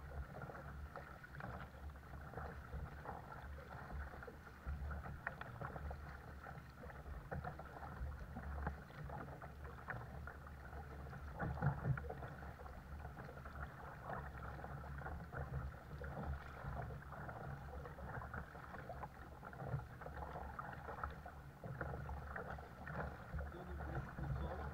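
Double-bladed paddle strokes pulling through calm sea water, with water lapping and splashing against the hull of a Hidro2 Caiman 100 sit-on-top kayak, over a steady low rumble. One louder splash or knock comes about halfway through.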